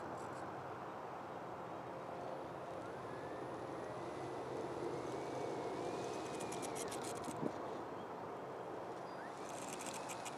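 Small electric motor and propeller of a foam RC plane whining, rising in pitch from about three seconds in and cutting off abruptly about seven and a half seconds in. Steady wind noise runs underneath, and there are short runs of rapid clicking just before the cutoff and again near the end.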